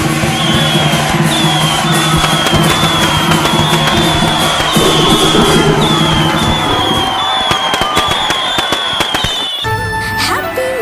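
Strings of firecrackers crackling over festive music. About seven seconds in, the music drops away and leaves a dense run of rapid pops, which cuts off just before the end.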